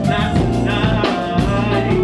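Live band music from a rap performance: a drum kit keeping a steady beat over bass and electric guitar, loud and continuous.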